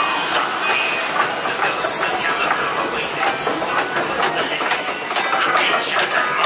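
Log flume boat climbing the ride's chain lift: a steady clatter of clicks and clacks over the rush of water.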